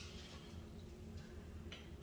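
Quiet room tone with a steady low hum, broken by two faint light clicks, one about a second in and a slightly sharper one near the end.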